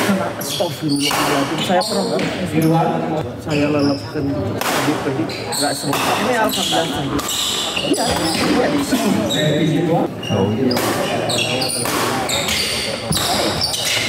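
Badminton doubles rally in an indoor hall: repeated sharp racket strikes on the shuttlecock and players' footwork on the wooden court, with spectators talking throughout.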